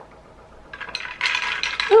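Ice cubes rattling and clinking against a tall glass of iced coffee as a straw stirs them, starting about a second in.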